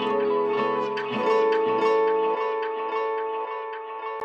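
Plucked-string melody played back through a fully wet ping-pong delay, its echoes bouncing between left and right as the pan is brought from hard right back toward center. The notes thin out near the end.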